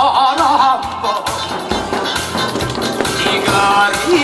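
A man singing with heavy vibrato through a microphone and PA, in the style of a Korean pumba street performer, over amplified backing music with a steady beat. The voice is strongest in the first second and again near the end.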